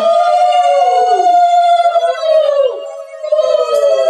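Several conch shells blown together in long, steady, overlapping notes, each sagging in pitch as the blower runs out of breath. The sound dips briefly a little under three seconds in, then picks up again.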